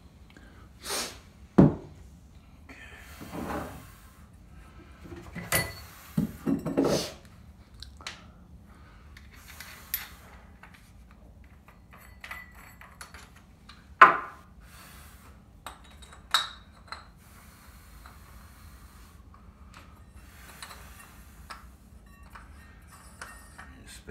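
Metal hole saws and a drill arbor being handled and swapped, with scattered clinks, knocks and a few sharp clicks. The sharpest come near the start and a little past halfway.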